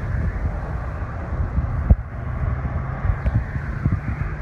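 Wind buffeting the phone's microphone: a continuous low, fluttering rumble. A single thump about two seconds in.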